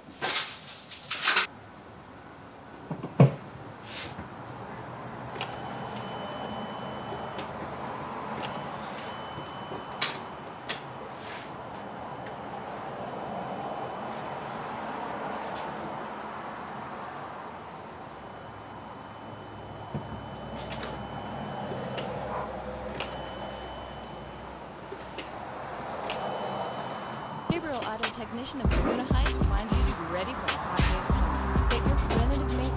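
Ignition key on a 2008 Ford Edge cycled on and off repeatedly, giving sharp clicks and short electronic beeps over a low hum that swells and fades. This primes the fuel system to check for gas leaks before the first crank after the cylinder head job.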